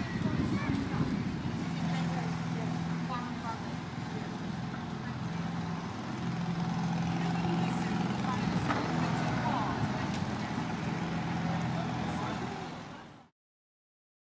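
Street ambience: a vehicle engine running with a steady low hum over traffic noise, with indistinct voices. It fades out to silence near the end.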